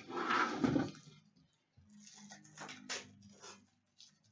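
Foil trading-card pack wrapper being torn open and crinkled by hand: a loud tearing rustle in the first second, then a few softer crinkles.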